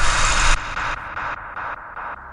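Loud static-like noise burst that cuts off about half a second in, followed by fading echo repeats about three times a second: a trailer sound effect.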